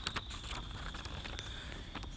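Faint background noise in a pause of the reading, with a thin steady high tone and a few faint clicks.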